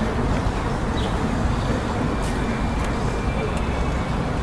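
Steady city street traffic noise, a continuous low rumble of passing vehicles with no single event standing out.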